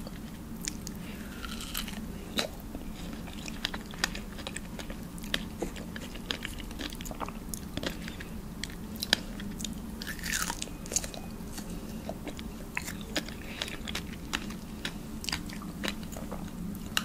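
Close-miked chewing of a juicy strawberry: many short, sharp mouth clicks and bites at irregular spacing throughout, over a faint steady low hum.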